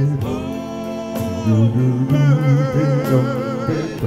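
Five-man vocal group singing in close harmony. A lead voice holds long notes with vibrato over a steady low bass voice.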